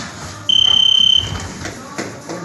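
Electronic boxing round timer giving one steady high-pitched beep, about three-quarters of a second long, starting about half a second in, over background music in the gym.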